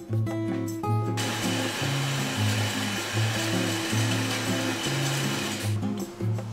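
Background music with a bass line runs throughout. From about a second in until just before the end, a just-started washing machine makes a loud, steady rushing noise, which then stops abruptly.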